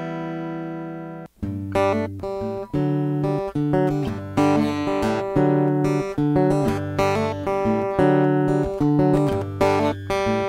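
Dean Exotica bubinga acoustic-electric guitar heard through its pickup and Aphex-enhanced preamp. A chord with the Aphex processing on rings out and cuts off a little over a second in. Then the same picked passage starts over with the Aphex switched off: bass notes alternating with chords in a steady rhythm.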